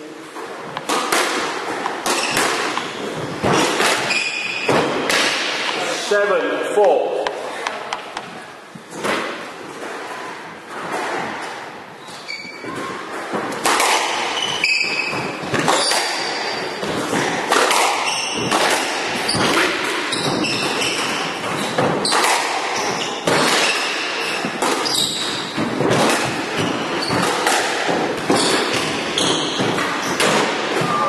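Squash rally: repeated sharp thuds of the ball struck by rackets and hitting the court walls, with short squeaks of shoes on the wooden floor.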